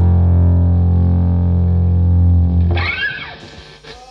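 The song's final chord on distorted electric guitars and bass guitar, held and ringing steadily, then cutting away about three seconds in. A short rising-and-falling sound follows near the end as it goes much quieter.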